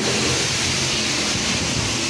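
Car wash equipment giving a pretty loud, steady rushing noise with a low hum beneath it.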